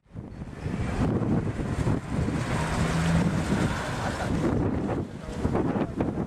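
Wind buffeting the camera's microphone outdoors: a deep, uneven rushing noise that swells and dips.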